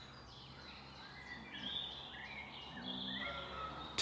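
Faint birdsong: short chirps and warbled phrases that come in about a second in, over a low, steady background hiss.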